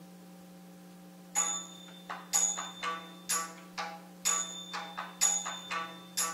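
Saraswati veena: a steady drone note sounds alone at first, then about a second and a half in, plucked notes begin. The plucks come about twice a second, each ringing briefly.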